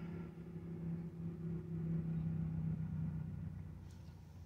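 A quiet, steady low hum inside a car's cabin, easing off near the end.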